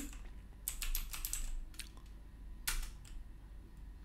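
Typing on a computer keyboard: a few quick keystrokes about a second in, then single key presses, the loudest near three seconds in.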